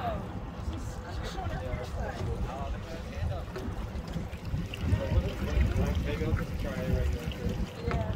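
Wind rumbling unevenly on a phone microphone, with faint voices talking in the background.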